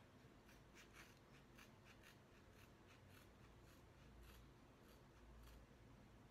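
Faint, quick snips of scissors cutting into the ends of a lock of long hair, about three short snips a second.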